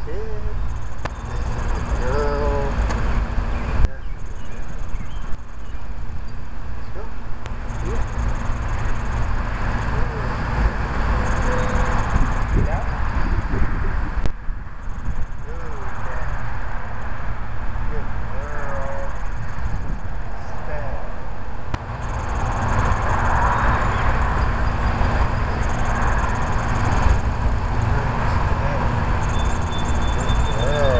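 Steady low outdoor rumble, with a few short chirps that rise and fall in pitch scattered through it and patches of faint high hiss.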